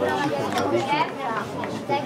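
Indistinct chatter: several voices talking at once, with no clear words.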